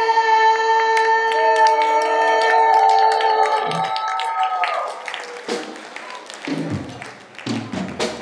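A long held musical note lasts about four and a half seconds over scattered hand claps. Then come a few quieter drum hits as a live band on stage starts up.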